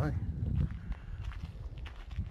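Footsteps of someone walking along a dirt-and-gravel driveway, irregular steps over a low rumble.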